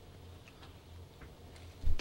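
A quiet pause in speech at a broadcast-studio microphone: a steady low hum with a few faint ticks.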